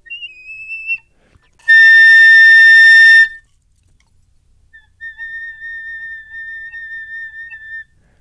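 Piccolo whistle tones set against a full tone. First comes a faint, slightly wavering whistle tone lasting about a second, then a loud full note with a rich tone for about a second and a half. After a pause, a thin, steady whistle tone follows at the same pitch for nearly three seconds.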